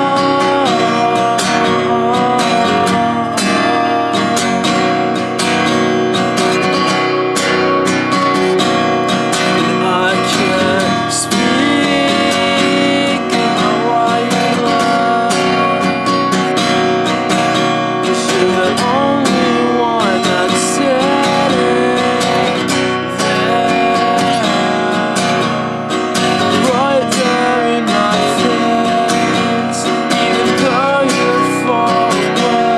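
A steel-string cutaway acoustic guitar, a Seagull by its headstock, strummed and picked steadily as an instrumental passage of a song, with the player's voice coming in briefly a few times in the second half.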